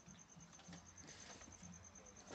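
Near silence: faint outdoor background with a thin, rapidly pulsing high whine and a few soft clicks.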